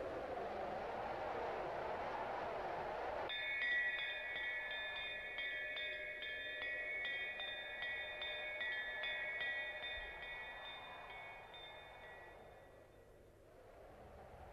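A whooshing, wind-like noise for the first few seconds, then wind chimes tinkling with many quick strikes, gradually fading away near the end.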